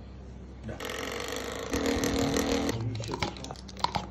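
A man's long, drawn-out burp lasting about two seconds, dropping lower in pitch partway through.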